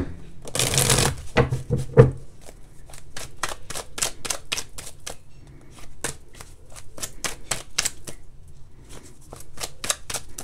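Oracle cards being shuffled by hand: a short rush of cards near the start, then a long run of quick, crisp card clicks.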